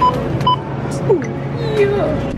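Self-checkout barcode scanner beeping as cans are scanned: two short, high beeps about half a second apart, over background music.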